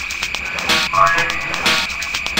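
Electronic drum and bass track: evenly repeating percussion under a steady high held synth tone, with short pitched synth notes about a second in.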